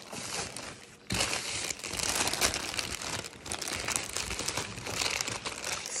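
Paper sandwich wrapper crinkling and rustling as it is pulled open and unfolded by hand, louder from about a second in.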